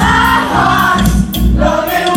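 A live pop-rock band playing: a sung lead vocal over electric guitar, bass and drums, with regular drum and cymbal hits.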